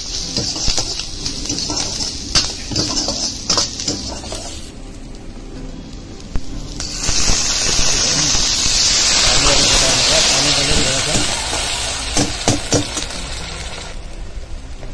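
Chopped vegetables stir-frying in hot oil in an iron wok, sizzling, with a steel ladle scraping and knocking against the pan. About seven seconds in, liquid poured into the hot wok sets off a sudden, louder hissing sizzle that slowly dies down, with a few more ladle knocks near the end.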